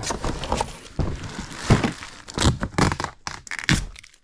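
Plastic air-pillow packing crinkling and a plastic storage tote scraping and knocking against cardboard as it is worked out of a box: a busy run of irregular rustles, scrapes and knocks.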